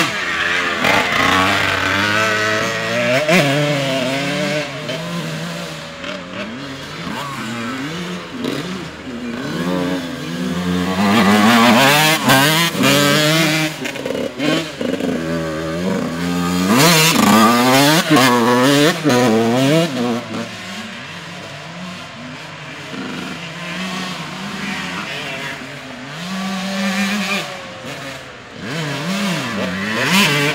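Dirt bike engines revving up and down as the bikes ride laps of a muddy track, pitch rising and falling as they accelerate and ease off through the turns. Loudest as a bike passes close, about 12 and 18 seconds in, with a quieter stretch later on as the bikes ride farther off.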